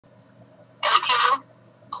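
A short burst of a voice over a phone line, thin and garbled, about a second in.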